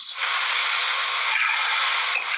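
Steady hiss with no low end: the noise floor of the replayed courtroom recording, heard between the judge's sentences.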